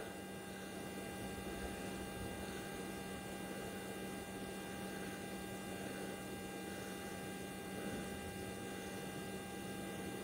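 Faint steady electrical hum with several thin, fixed high tones above it, unchanging throughout.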